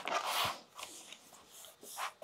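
Paper handling: a card file-folder cover flap rustled and pressed down by hand onto double-stick tape, with a short rustle in the first half second and a few faint light taps and rubs after.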